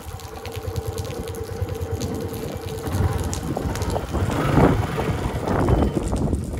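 Motorcycle engine idling at a standstill, with wind buffeting the microphone; a steady hum sits over the low running sound for about the first three seconds.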